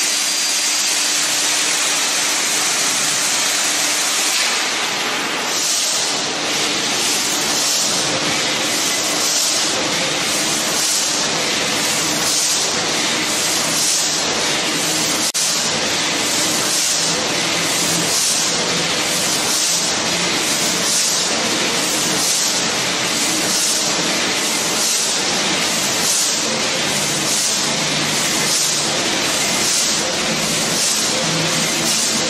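Burmeister & Wain 884-VF-150 stationary diesel engine running just after start-up: a loud, steady hissing noise with a slow, even pulse.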